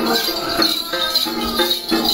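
Music for a Then ritual dance: a plucked đàn tính lute playing steady notes under a continuous shimmering jingle of shaken bell clusters.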